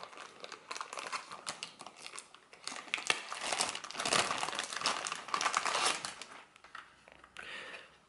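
Clear plastic bag crinkling and rustling as it is pulled off a small network switch, in irregular crackles, busiest in the middle and dying away shortly before the end.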